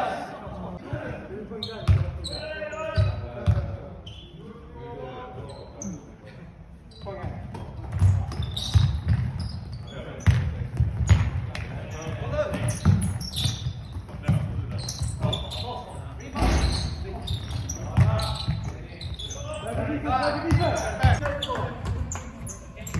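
Basketball bouncing on a hard sports-hall floor during a game: short, echoing thumps, about two a second from about eight seconds in. Players' voices ring in the large hall near the start and near the end.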